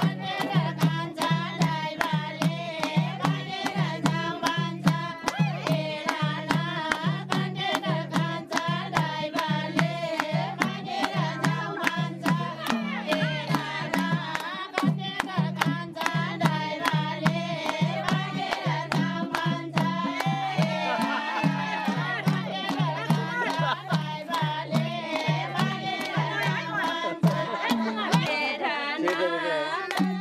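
Nepali folk song: voices singing over a steady, repeating hand-drum beat.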